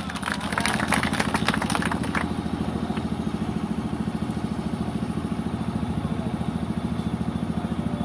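A small engine idling steadily with a fast, even pulse, with some crackling noise over the first two seconds.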